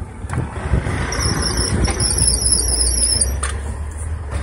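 Road traffic: vehicle engines running low and steady with tyre noise building, and a high, wavering squeal lasting about two seconds through the middle.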